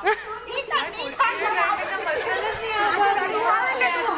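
Chatter of several young women talking over one another, loud and close.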